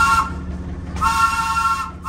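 Trolley car #358's air whistle sounding a three-note chord: a short toot, then a longer one of about a second, over the steady low rumble of the moving car.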